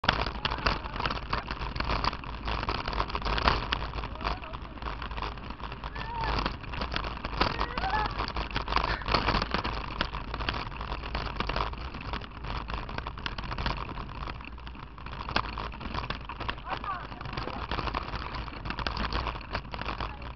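A bicycle riding over a loose gravel and stone dirt track, heard through a handlebar-mounted action camera: a constant, irregular clatter of jolts and rattles over the rumble of tyres on gravel.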